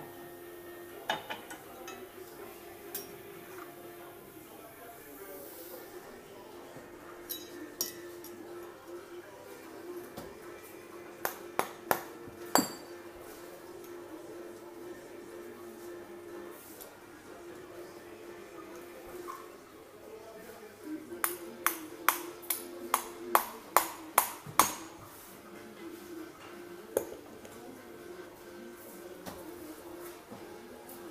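Sharp metallic clinks with a short ringing tail as metal tools strike pewter and steel. A few strikes are scattered through the first half, then comes a quick run of about ten strikes about two-thirds of the way through, over a steady low hum.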